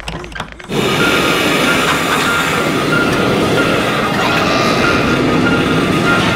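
Cartoon rushing-wind sound effect that starts suddenly about a second in and then holds steady and loud.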